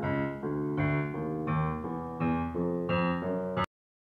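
Piano notes played one key at a time in quick succession, about three a second, while a PianoDisc ProRecord system calibrates the keys; each released note is sounded slightly delayed, the sign that the key has been calibrated. The run cuts off suddenly near the end.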